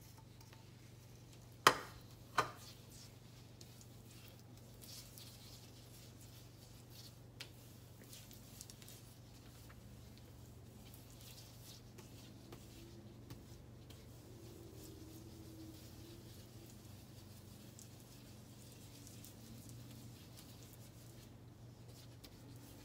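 Faint rubbing of a sponge working cleaning paste over a glass-ceramic stovetop, with two sharp knocks about two seconds in and a lighter click later, over a low steady hum.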